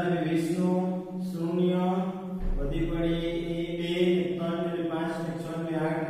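A man speaking in long, drawn-out, sing-song phrases while explaining at the board, his voice steady and close.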